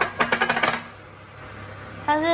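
A metal utensil clinks rapidly against a stainless-steel pan of chicken stew, about seven quick clicks in the first second, then stops.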